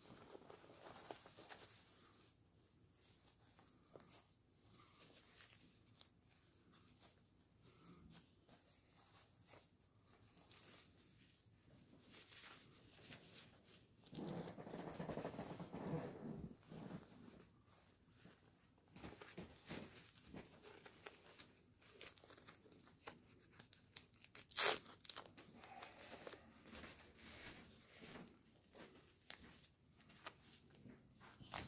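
Faint crinkling and rustling of a disposable diaper being unfolded, wrapped around a small silicone doll and fastened. There is a louder spell of rustling about halfway through and one short, sharp rip near the end, as a fastening tab is pulled.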